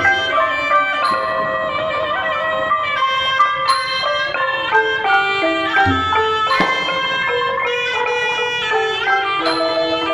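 Cambodian pinpeat ensemble playing: the roneat ek xylophone's rapid struck notes, kong vong gong circles, and the reedy, sustained melody of the sralai oboe, with the sampho barrel drum. A single deep drum stroke comes about six seconds in.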